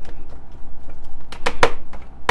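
Broccoli salad being tossed by hand in a plastic container: a soft rustle of the dressed broccoli and shredded cheese, with a few short sharp knocks about a second and a half in.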